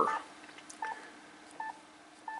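Yaesu FT-991A transceiver's key beep: short single-pitch beeps, three of them about three-quarters of a second apart, each time a touchscreen key is pressed.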